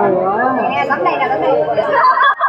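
Several voices chattering and talking over one another.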